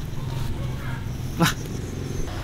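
A man's short yelp, "wah", about one and a half seconds in, over a steady low hum.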